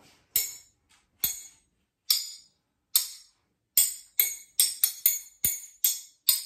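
A metal fork and spoon tapped together as rhythm sticks: four even taps keeping a steady beat, about one a second, then a quicker, uneven run of taps playing the rhythm of the rhyme's words.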